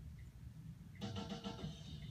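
A low rumble, then music from a television's speakers begins about a second in as a new promo segment starts.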